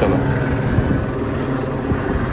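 A steady low rumbling noise with no clear rhythm or pitch.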